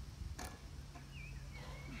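A loaded hex bar lifted off the ground in a deadlift: a single sharp clink of the bar and plates about half a second in, then faint high creaks as the lifter stands up with it.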